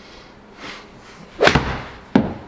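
A full-speed golf swing: the club strikes the ball off the hitting mat and drives it straight into the simulator screen, one sharp crack about a second and a half in.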